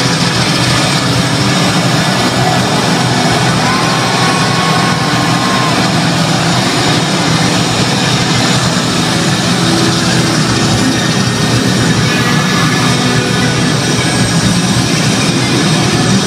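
Live rock band playing in a stadium, heard from within the crowd as a loud, steady, dense wash of band and crowd sound. A brief high held note stands out about four seconds in.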